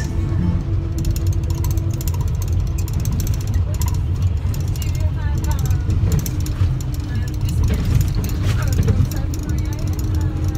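Inside a minibus driving over a badly potholed road: a steady low rumble of engine and tyres, with frequent rattles and knocks from the cabin as it jolts over the holes.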